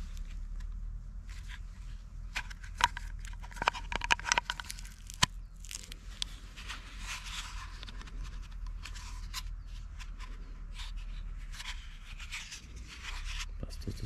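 A knife in a kydex sheath being handled on its neck cord: scattered sharp clicks and scrapes of hard plastic, the loudest clicks a few seconds in, with rustling handling noise later.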